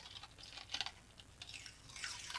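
Fingertips rubbing dried masking fluid off watercolor paper: faint, irregular scratchy crackles.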